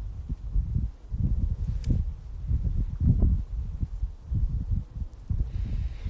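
Wind buffeting a phone's microphone outdoors: an irregular low rumble that swells and dips in gusts, mixed with some handling rustle.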